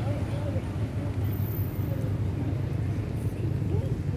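Indistinct background voices of people talking over a steady low rumble.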